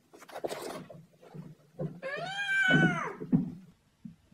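A person's "oh no!" exclamation, pitch-shifted so high that it sounds squeaky and animal-like, rising and then falling in one call. Before it come a few soft thumps and scuffs from the husky puppy tumbling on the carpeted stairs.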